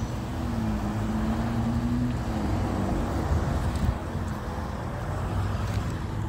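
Road traffic: a steady low rumble with a vehicle engine's hum that stops a little after two seconds in.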